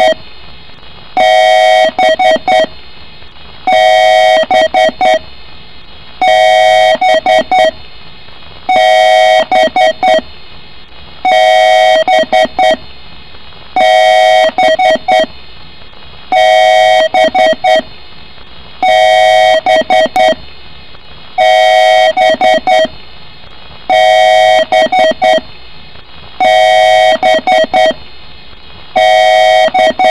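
A PC's BIOS beeping a code over and over: one long beep followed by a quick run of several short beeps, repeating about every two and a half seconds.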